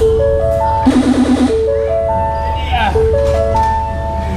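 Fairground ride music over loudspeakers: an electronic jingle of a rising four-note figure, played three times.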